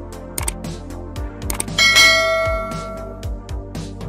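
Subscribe-button sound effects: clicks, then a bell chime just before two seconds in that rings out and fades over about a second and a half, over background music with a steady beat.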